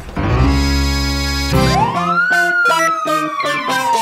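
Cartoon sound effects: a low, steady rumble for about the first two seconds as the car hits the curb, then a siren tone that sweeps up and slowly falls, over music with a regular beat.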